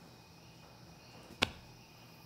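Quiet pause with faint steady insect sound, broken by a single sharp click about one and a half seconds in.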